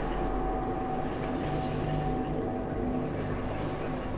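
Low, steady droning sound with a few held tones, one faint and higher than the rest, and no breaks or hits.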